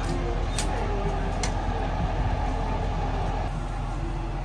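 Steady low mechanical rumble, with two short clicks about half a second and a second and a half in.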